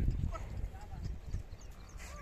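Outdoor ambience around a large resting flock of sheep and goats: a low rumble, loudest at the start and easing off, with a few faint short chirps over it.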